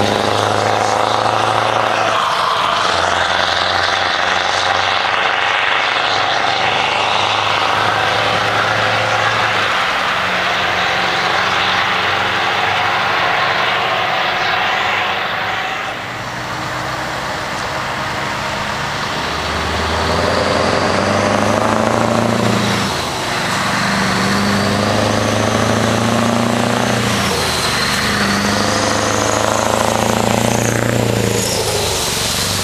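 Scania trucks with open, straight-piped exhausts pulling away and accelerating through the gears, the engine note breaking and climbing again at each shift. Partway through, a second truck takes over with the same stepping run-up.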